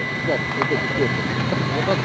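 Several people talking at once around the landed Soyuz capsule, faint and overlapping, over a steady low hum.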